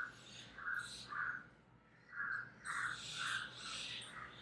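A bird calling in the background, a series of short calls about two a second, with a brief pause in the middle.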